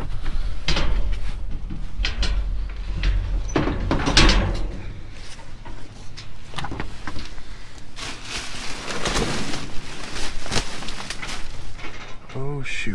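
Black plastic garbage bags being shifted about in a metal dumpster: irregular rustling and crinkling of the plastic, with knocks and scrapes against the steel walls. A low rumble runs under the first five seconds or so.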